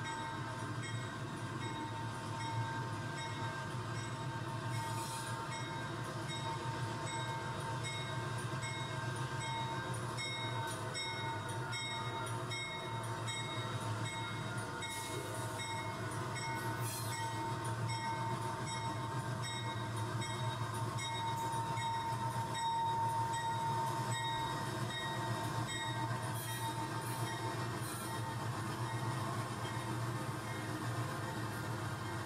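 Train running steadily, with a high, even whine and faint, evenly spaced ticks, growing a little louder past the middle.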